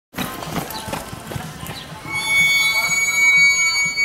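Murmur of voices, then about halfway through a steady high-pitched tone starts and is held unchanged for about two seconds.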